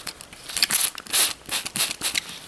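Hand trigger spray bottle spritzing water onto a paper towel in several short, hissing squirts, wetting it until it is damp.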